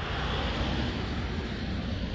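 Traffic noise from a passing vehicle: a steady rumble and tyre hiss that swells in the first second and then eases off.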